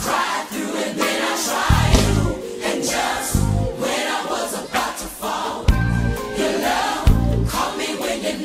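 Gospel praise music: a choir singing over a bass line and drums.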